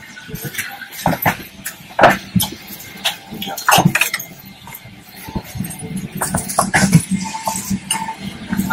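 Aircraft cabin during boarding: scattered knocks, clicks and rustles of passengers and bags moving through the aisle, over a low steady cabin hum that comes up in the second half.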